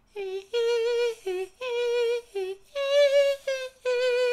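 A lone voice humming a wordless tune: a run of short, separate notes with a wavering vibrato, the highest and loudest note about three seconds in.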